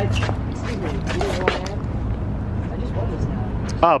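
Steady low rumble of street traffic, with faint voices talking and a few light clicks, and a voice saying "Oh" near the end.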